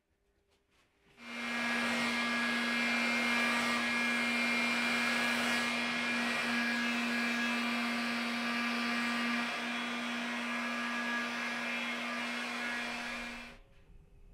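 Electric heat gun running steadily, its fan blowing hot air over wet epoxy resin: a steady motor hum under a loud rush of air. It switches on about a second in and cuts off just before the end.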